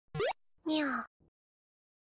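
Channel intro sting: a quick rising pop, then a short voice-like sound falling in pitch, with a faint blip just after.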